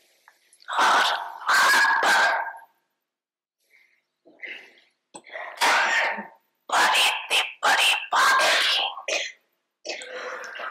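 Only speech: a woman speaking slowly into a microphone in short phrases, with a long pause a few seconds in.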